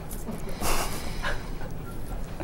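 Soft breathy voice sounds from people in a small studio, with a short breathy hiss about two-thirds of a second in.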